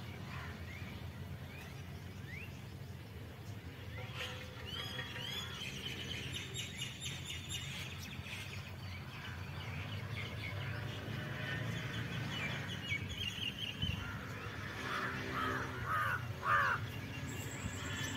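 Birds chirping and calling over a steady low background hum, with a busy run of short chirps from about four seconds in and a few louder calls near the end.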